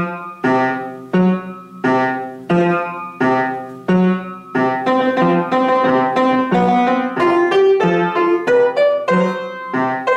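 Upright piano played: the music starts just before, with a run of struck chords about every 0.7 s, each ringing and fading, then from about halfway a denser passage with a moving melody over sustained bass.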